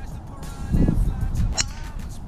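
Golf club striking the ball on a tee shot: one sharp click about one and a half seconds in, after a low rumble.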